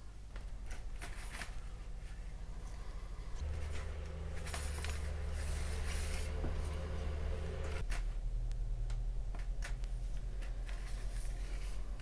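Hobby knife blade cutting through the tabs of a brass photo-etch fret on a cutting mat: scattered small clicks and scrapes, over a low steady hum.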